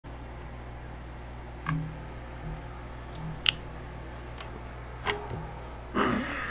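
A handful of short, sharp computer mouse clicks spread across a few seconds, over a steady low electrical hum.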